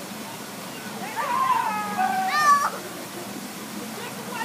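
A child's high-pitched, drawn-out vocal cry about a second in, sliding slightly down and then breaking into a sharp rising squeal, over a steady background hiss.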